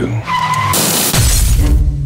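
Trailer sound design over the music score: a brief high tone, then a sharp hissing whoosh about three-quarters of a second in that falls into a deep rumbling hit.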